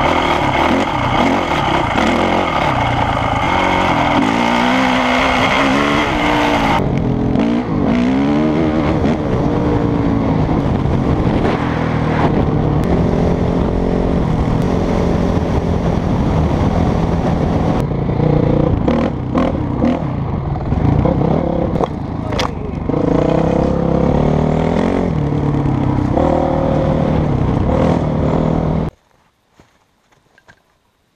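Dirt bike engine running under way, revving up and down again and again as the rider rolls on and off the throttle, with wind rushing over the helmet camera in the first several seconds. The sound cuts off abruptly about a second before the end.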